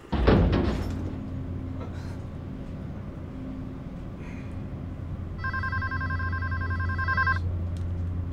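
A loud burst of noise comes first, then a low steady hum. About five seconds in, a mobile phone rings once with a warbling ring lasting about two seconds.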